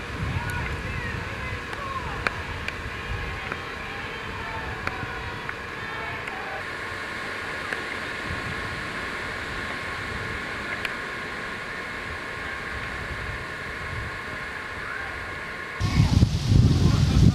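Wind gusting on the microphone in uneven low rumbles over a steady hiss, with faint distant voices of a group.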